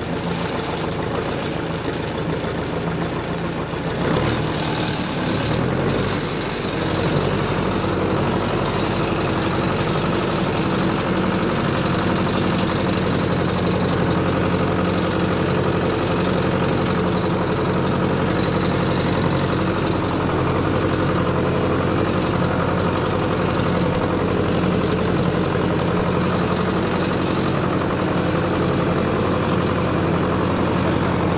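Ford 861 tractor's freshly rebuilt four-cylinder diesel engine pulling a ripper through the ground in low gear, working steadily under load. It gets louder about four seconds in and then holds even.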